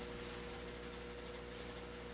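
Faint steady electrical hum with a thin, steady mid-pitched tone over it, from a lit 2D compact fluorescent lamp's electronic ballast running.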